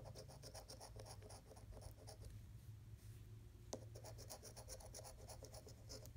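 Faint scraping of a metal coin rubbing the coating off a paper scratch-off lottery ticket in quick, short, repeated strokes. The strokes come in two runs with a pause of about a second and a half between them, and a single click as the second run starts.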